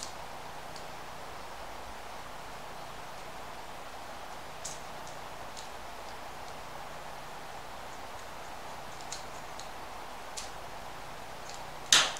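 A few faint, scattered clicks and rustles of a plastic washing-machine door lock switch being handled, over a steady hiss, with a sharper click near the end.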